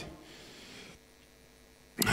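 Near silence: faint room tone in a pause between sentences. It fades over the first second and grows quieter still, with a faint steady hum.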